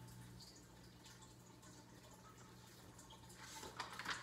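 Near silence with a faint steady hum; near the end, the soft rustle and a few light clicks of a picture-book page being turned.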